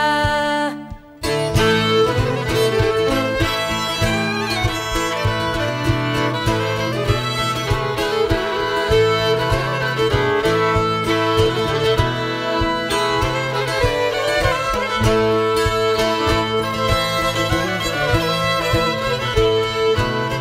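Swedish folk instrumental: a fiddle playing the tune over a plucked string accompaniment. It drops out briefly about a second in, then plays on steadily.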